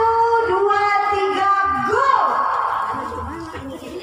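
A woman's high voice holding one long call for about two seconds, swooping in pitch at the end, then quieter mixed voices.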